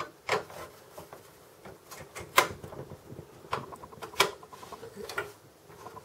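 Phillips screwdriver backing out a small screw from a desktop computer's front USB board and steel chassis: scattered light clicks and ticks. Sharper clicks come about a third of a second in, at about two and a half seconds and at about four seconds.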